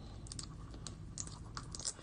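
Fingernails picking and clicking at a small plastic toy capsule while trying to pry it open: faint, irregular little clicks and scratches, more of them near the end.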